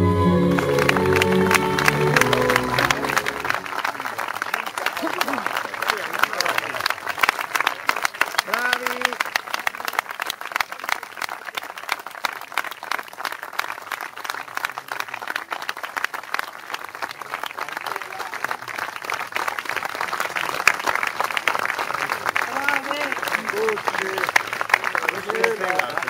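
Audience applause, dense and steady, following orchestral music that fades out in the first few seconds. A few voices call out over the clapping.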